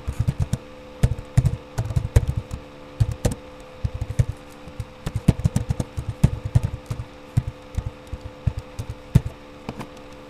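Computer keyboard typing: irregular keystrokes, several a second with short pauses, over a steady low hum.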